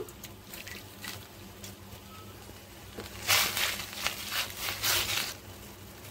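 Water with a little oil heating in a pan on the stove as it comes to the boil: a few faint ticks, then about two seconds of hissing and bubbling in several surges.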